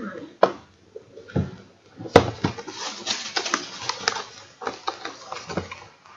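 A cardboard product box being handled and opened by hand on a wooden table. There are a few sharp knocks and taps, the loudest about two seconds in, then a stretch of scraping and rustling of cardboard and packaging with many small clicks.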